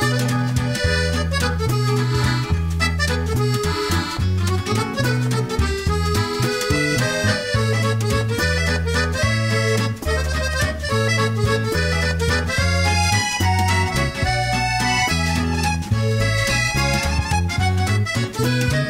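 Background music, with a melody over a bass line that moves from note to note.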